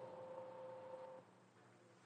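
Near silence between sentences: a faint steady tone that stops a little past halfway, then dead silence.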